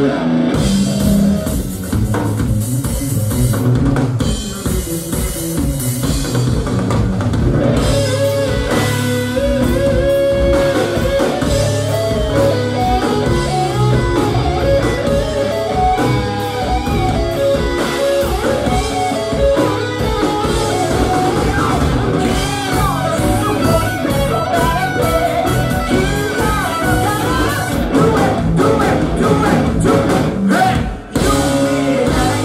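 Live rock band playing loud and steady: drum kit, bass and electric guitar, with little singing; an electric guitar carries the melody through much of it.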